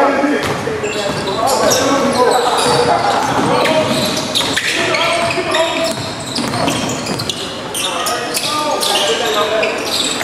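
A basketball being dribbled on a hardwood gym floor, the bounces ringing in a large gym. Players' and onlookers' voices carry underneath.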